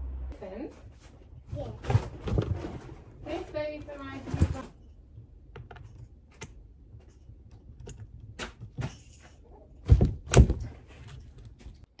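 Clicks and knocks of a hex tool and hands working on a 1/8 RC truggy's chassis while loosening the heated engine mount screws, with two loud knocks close together about ten seconds in.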